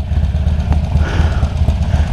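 Harley-Davidson Forty-Eight Sportster's air-cooled V-twin engine idling with a steady low, lumpy pulse while the bike stands in stopped traffic.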